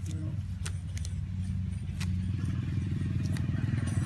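A small engine running steadily, its low, fast-pulsing hum growing a little louder toward the end, with a few faint clicks over it.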